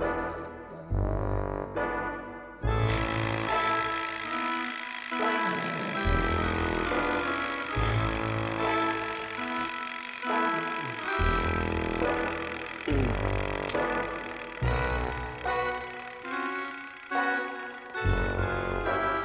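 Background music, joined about three seconds in by a mechanical bell alarm clock ringing continuously.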